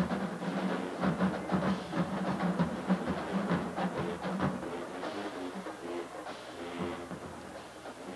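Marching band in the stands playing: drums beating with held horn notes, growing fainter toward the end.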